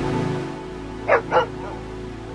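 A dog barks twice in quick succession, about a second in, over soft background music.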